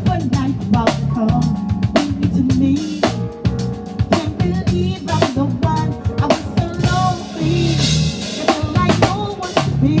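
Live band playing a soul groove: a drum kit with bass drum and snare hits over a stepping bass line and keyboards. The singer comes in at the very end.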